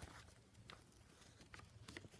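Near silence: room tone with a couple of faint soft ticks from glued paper being handled.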